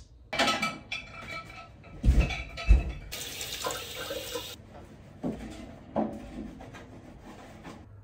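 Kitchen cleaning sounds: handling noises and knocks, the two loudest a little past two seconds in, and about a second and a half of water running from a tap shortly after.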